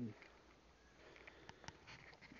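Near silence: faint outdoor background, with a few faint clicks about one and a half seconds in.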